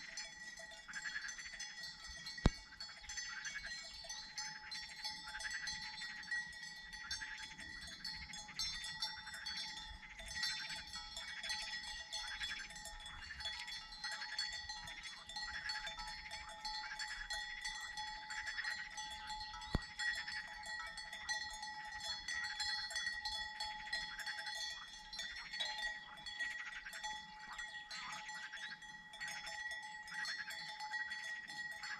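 Bells on grazing livestock ringing and clanking continuously, with two sharp clicks, one about two and a half seconds in and one near twenty seconds in.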